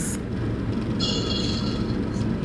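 A steady low hum and rumble with thin, steady high-pitched tones over it. The tones drop out at the start and come back about a second in. It is an unexplained noise coming through the call.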